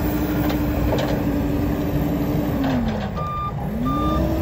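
Deutz diesel engine of a Genie GTH-5519 telehandler running steadily, its revs dropping about three seconds in and picking back up. The machine's reversing alarm gives two beeps near the end.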